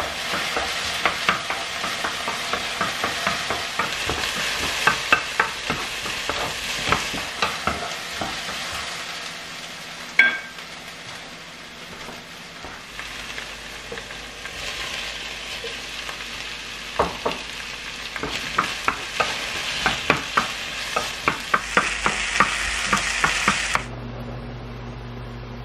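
Sliced onion sizzling in a frying pan while a spatula stirs and scrapes it, with many sharp clicks of the spatula against the pan. There is a single ringing clink about ten seconds in and a quieter stretch of plain sizzling before the stirring picks up again.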